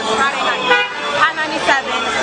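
A car horn sounds once, briefly, just under a second in, amid people talking.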